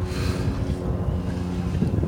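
A sailboat's engine running steadily as the boat motors along, a constant low drone, with wind buffeting the microphone.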